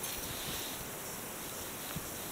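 Steady outdoor background hiss with no distinct sound in it, apart from a faint click or two.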